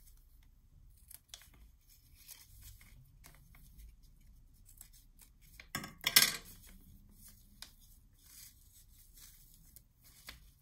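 Small craft scissors snipping ribbon, a couple of sharp cuts about six seconds in, the loudest sound. Around them, faint rustling of ribbon and paper being handled.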